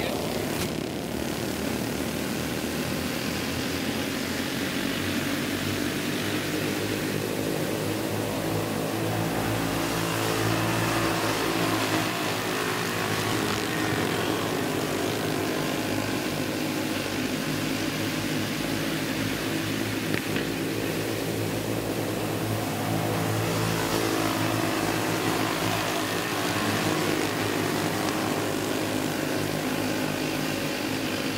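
Several racing go-karts' small flathead engines running together at speed, a steady buzzing drone whose pitch shifts as karts pass.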